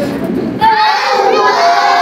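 A class of children chanting together in unison, a Quran-reading drill spelling out Arabic letters with drawn-out held syllables. The chant resumes about half a second in, after a brief breath.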